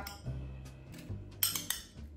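A metal spoon clinking against a glass bowl while diced tomatoes are spooned out, with a quick cluster of clinks about a second and a half in. Soft background music plays under it.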